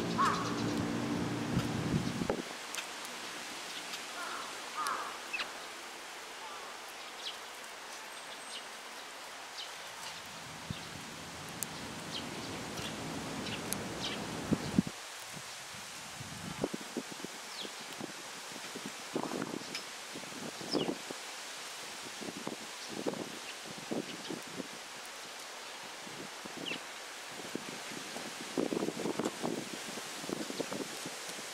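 Young Eurasian tree sparrow pecking millet seed from a hand: irregular soft taps and clicks, thicker in the second half, with faint high sparrow chirps. A low hum stops about two seconds in.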